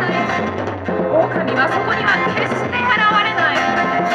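Live band music played through a stage PA: acoustic guitar, keyboard and drums playing continuously, with a bending melody line over a steady bass.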